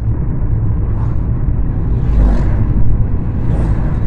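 Steady low rumble of road and engine noise heard inside a car's cabin while it drives along a highway.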